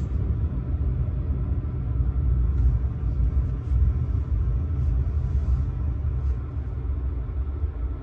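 Deep, steady rumble of trains heard from inside a passenger train carriage, with another train running alongside just beyond the window; the rumble eases a little near the end.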